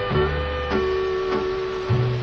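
Country band's instrumental break led by a steel guitar: held notes, some entered with a short slide, over a steady walking bass line.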